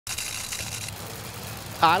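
A low, steady engine rumble under a hiss, the hiss easing off about halfway through; a man starts speaking near the end.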